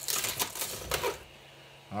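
PLA support structures crackling and snapping in a quick run of sharp clicks as a scraper pries a large 3D print off the printer bed. The clicking dies away a little past halfway.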